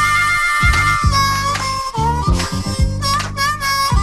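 Harmonica playing a melodic line with held notes and pitch bends over a rap beat of bass and drums.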